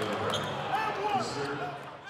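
Basketball game sound: short high squeaks of sneakers on the court over a murmur of voices, fading out near the end.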